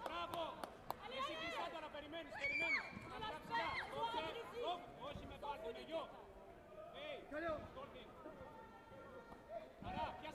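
Overlapping voices and chatter in a large hall, with several people calling out at once and no single clear speaker; a few sharp clicks in the first second.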